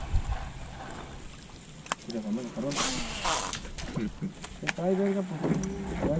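Quiet voices of men talking, with a few sharp clicks and a brief hiss about three seconds in.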